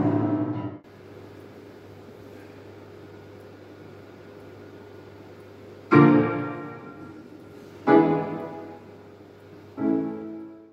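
Piano: a passage ends about a second in, then after a pause with only a faint steady hum, three chords are struck about two seconds apart, each left to ring and die away.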